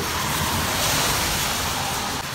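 Car tyres hissing on wet pavement as a car drives past, the hiss swelling to its loudest about a second in and then easing off.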